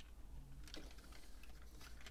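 Faint, scattered clicks of hard plastic parts on a Fans Hobby MB-16 Lightning Eagle transforming robot figure as its hip skirt panels are swung round into place by hand.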